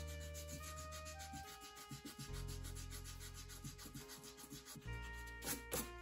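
An eraser rubbing pencil marks off an ink illustration on paper, in quick, even back-and-forth strokes, with a couple of harder strokes near the end. Soft background music with long held notes plays underneath.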